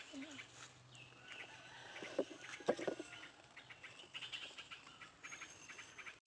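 Small birds chirping and calling in the surrounding trees, in short repeated notes, with a few dull knocks about two to three seconds in.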